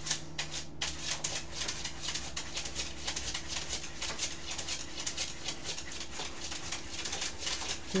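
A dog digging and scratching at a surface: a fast, continuous run of short scratches with a steady low hum underneath.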